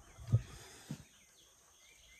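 A chainsaw being handled and clamped in a bench vise: two dull low thumps in the first second, the first louder.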